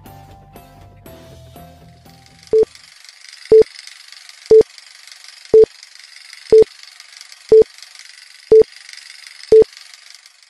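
Countdown sound effect: a short low beep once a second, eight in all, over a steady hiss. It follows the last descending notes of a short intro tune.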